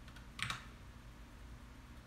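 A short cluster of key clicks on a backlit computer keyboard about half a second in, a few quick presses.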